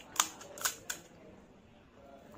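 Crisp, hollow fried puri shell crackling as it is handled and broken in the fingers: three sharp cracks in the first second.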